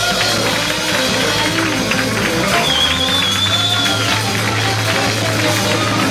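Live blues band playing: tenor saxophone, electric guitars, upright bass and drums, with a steady bass line and a long high note held about halfway through.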